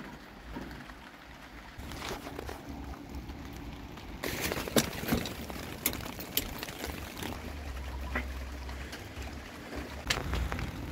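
Rain dripping and trickling, with a few scattered, irregular clicks and knocks.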